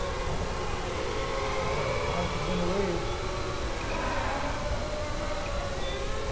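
Electric motors and propellers of FPV racing quadcopters whining in flight, the pitch slowly rising and falling as the throttle changes.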